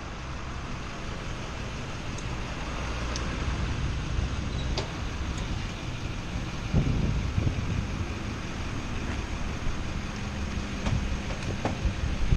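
Steady city street traffic noise with a vehicle engine running. A few short knocks and rattles about seven seconds in and again near the end as the stretcher is wheeled up to the ambulance.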